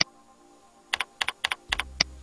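Typing on a computer keyboard: four quick keystrokes, each a double click, as the word "Book" is entered. A single sharp click comes at the start and another at the end, over faint background music.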